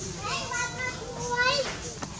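Infant macaque crying: two high, wavering calls, the second rising sharply in pitch about a second and a half in.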